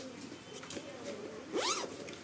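Zipper on a hard-sided fishing rod bag pulled quickly along its track, one short zip rising and falling in pitch about one and a half seconds in. The zipper is in good working order.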